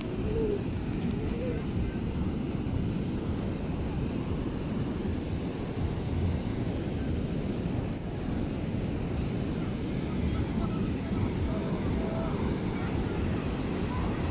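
Steady low rumble of wind buffeting the phone's microphone, with the wash of surf behind it. Faint voices come through now and then.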